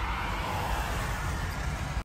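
Car cabin noise: a steady low engine and road rumble heard from inside a car crawling in traffic. It cuts off abruptly at the very end.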